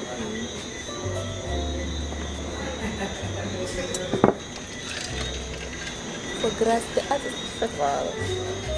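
Crickets chirping steadily as a high, continuous night chorus over background music with a deep bass line. There is one sharp knock about four seconds in, and faint voices near the end.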